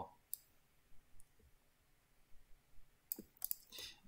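Sparse computer mouse clicks. There is one about a third of a second in and a faint one about a second in, then a quick run of several clicks a little after three seconds.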